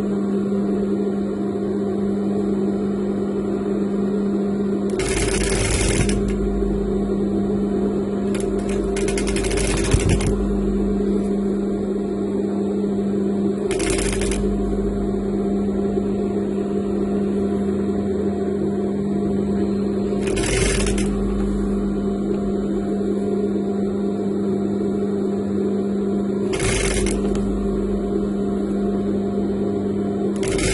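Industrial lockstitch sewing machine stitching braided trim onto satin, its motor humming steadily while the needle runs in short bursts of about a second, five times, a few seconds apart.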